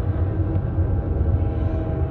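Dark ambient music for cello and harmonium: a steady low drone with held tones sustained above it.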